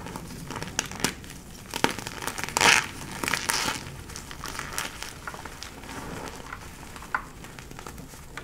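Hands crushing and crumbling blocks of gym chalk in a bowl of loose chalk powder: dry crunching and crackling in a run of short bursts, loudest about a third of the way in.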